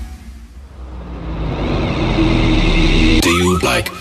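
Electronic dance music from a DJ mix in a transition. The previous track drops out and a noise sweep builds, rising over a low steady drone. About three seconds in, a rapid chopped vocal sample comes in.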